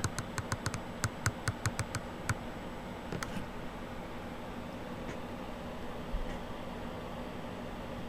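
A quick run of light clicks and taps, about five a second for the first two seconds, then a steady faint hum.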